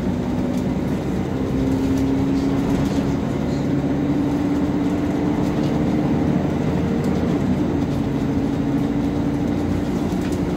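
Volvo B10BLE three-axle bus with a ZF automatic gearbox heard from inside the cabin: the engine and gearbox give a steady whine over the running noise. The whine rises slowly in pitch as the bus gathers speed and drops about seven seconds in, as the gearbox changes up.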